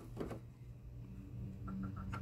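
Low, steady background hum with a faint soft knock about a quarter second in, as an egg is set down into a wire-and-wicker egg basket.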